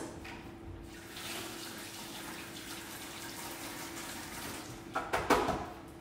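Kitchen sink tap running while hands are rinsed under it: a steady rush of water for about four seconds, followed by a short louder burst near the end.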